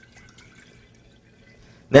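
Faint stream of water poured from a pitcher into a glass jar.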